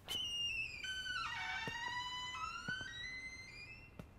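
Long, slow creak of a door swinging open on its hinges. Its pitch steps down about a second in, then climbs slowly toward the end.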